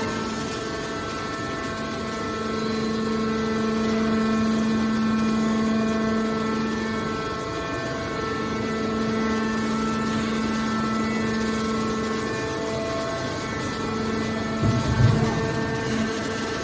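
Hydraulic pump unit of a horizontal scrap metal baler running with a steady hum. A short low thud comes near the end.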